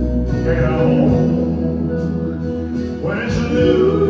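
Live country band playing, with acoustic and electric guitars over bass.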